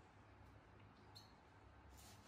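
Near silence: room tone with a faint low hum, broken by one faint, short, high squeak about a second in.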